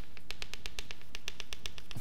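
Chalk tapping on a blackboard in quick, even succession, about ten taps a second, as a dashed line is drawn down the board.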